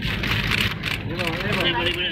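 Steady outdoor noise with a low rumble, and a voice calling out from about a second in.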